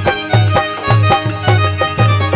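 Instrumental interlude of devotional folk music: a harmonium playing a melody over a steady drum beat.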